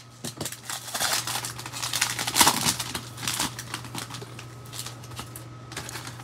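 Plastic cello wrapper of a Prizm basketball card pack crinkling and crackling as it is handled in the hand, busiest about halfway through.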